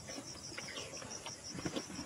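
Insects chirping in a rapid, even, high-pitched pulsing trill, with faint chewing and smacking from someone eating meat with his hands.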